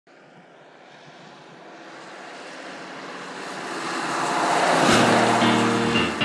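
A whoosh sound effect that swells steadily louder for about five seconds, followed near the end by the start of the news theme music with sustained notes.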